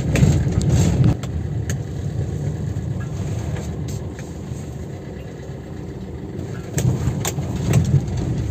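Car running at low speed on a rough dirt road, heard from inside the cabin: a low engine and tyre rumble, louder at the start and again near the end, with a few short knocks.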